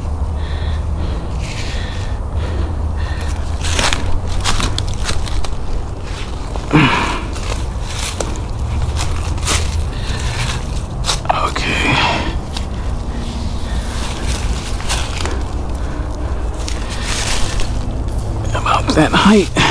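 Footsteps crunching through dry dead leaves, with the rustle and scrape of a hammock tree strap being wrapped around a trunk: scattered crackles over a low steady rumble.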